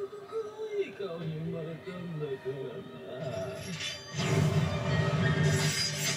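Anime soundtrack: a character's voice over background music, then a louder rush of noise from about four seconds in.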